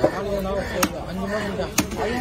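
A long machete-style knife chopping through fish pieces on a wooden log chopping block: three sharp chops, roughly one a second.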